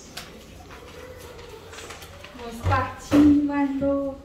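A person's wordless voice in the last second and a half: a short sound, then one long steady held note, with a light knock just before it.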